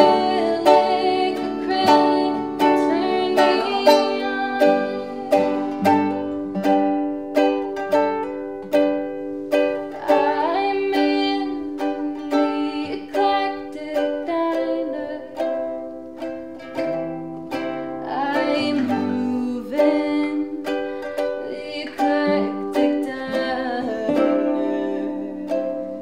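Ukulele and acoustic guitar playing a song together in a steady strum of about two strokes a second, with a woman's voice singing in places.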